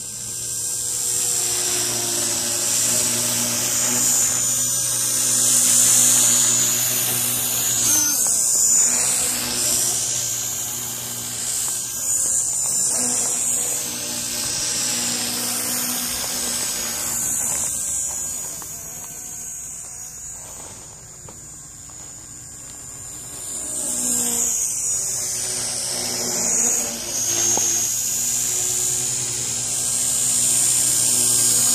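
Walkera Master CP micro collective-pitch electric RC helicopter in flight: a high-pitched whine of its motor and rotors that grows louder and softer as it moves about, with swooping changes in pitch about eight seconds in and again near the end.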